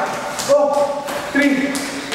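A man's voice calling out twice, short shouted counts, with a few light thuds of feet landing on a wooden floor.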